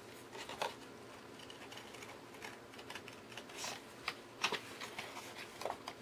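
Scissors cutting paper in a few separate, short snips, with the paper rustling as it is handled.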